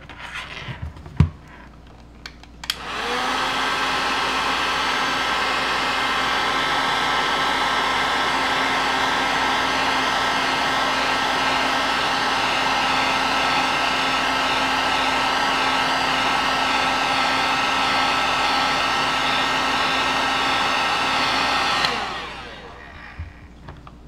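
Electric heat gun blowing hot air to shrink heat-shrink tubing over a micro USB cable end: a steady fan rush with a constant whine. It comes on about three seconds in and winds down a couple of seconds before the end.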